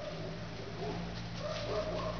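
Short, wavering animal calls, like whines, come and go over a steady low hum.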